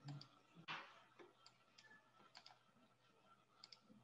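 Faint, scattered computer mouse clicks over quiet room tone, with one brief breathy hiss just under a second in.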